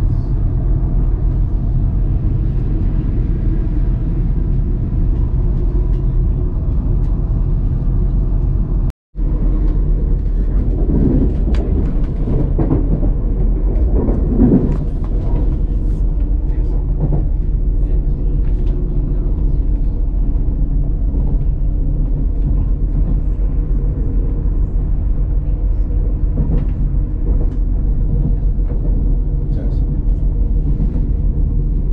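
Steady low rumble and hum of a passenger train running, heard from inside the carriage. It breaks off for a split second about nine seconds in, and faint voices come through for a few seconds after.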